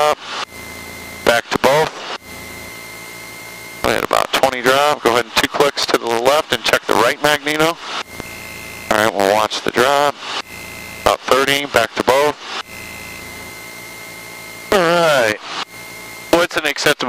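Men's voices through the aircraft's headset intercom, with a steady drone from the Cessna 162 Skycatcher's running engine and a faint constant whine underneath.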